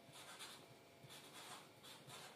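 Faint strokes of a felt-tip marker writing on a paper chart: a few short scratches.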